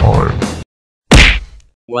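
Rock music with guitar cuts off, and after a short silence a single loud bang hits about a second in, fading out over about half a second. It is a cartoon impact sound effect, which the listeners that follow take for something Daphne has done.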